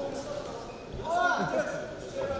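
Ringside shouting at an amateur boxing bout: a man's voice calls out loudly a little past the middle, over other indistinct voices.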